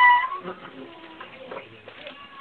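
A goat kid bleating once, a high pitched call that falls slightly and ends within the first half second, followed by faint scuffing.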